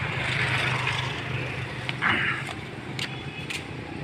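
Outdoor traffic noise: a steady low hum under a hiss that swells and fades twice, with a few light clicks near the end.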